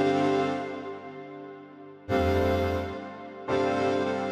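Keyboard chords from a breakcore track being produced in FL Studio, played back with an electric-piano-like tone. Three chords are struck, at the start, about two seconds in and about three and a half seconds in, and each fades away. A deep bass note sounds under the middle chord.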